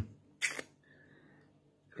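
Mostly near-silent room tone in a pause between speech, broken once by a brief hissy click about half a second in.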